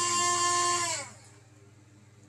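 Huina 1572 RC crane's boom winch motor and gearbox whining steadily as it lowers the boom, then winding down in pitch and stopping about a second in.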